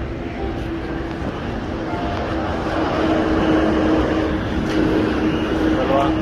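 Street traffic: a motor vehicle passing close by, its engine hum and road noise growing louder about halfway through.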